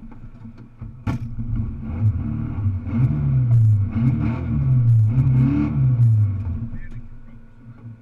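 Rally car engine at a standstill, revved up and down several times in quick blips with a sharp click about a second in; the revs drop back toward the end.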